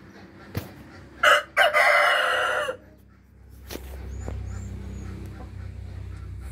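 A native chicken rooster crowing once, about a second in: a short first note, a brief break, then a long held call that ends about a second and a half later.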